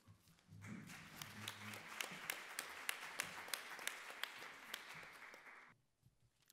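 Audience applauding, starting about a second in and cutting off suddenly near the end.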